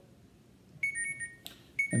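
Mobile phone notification alert: a two-note chime stepping down in pitch, sounding twice about a second apart.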